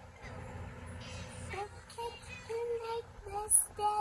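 A children's song playing from a tablet's speaker: a voice singing held notes over a steady backing.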